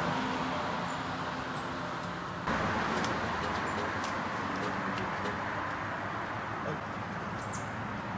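Steady outdoor background noise with a faint low hum, a few faint clicks, and a short high bird chirp near the end.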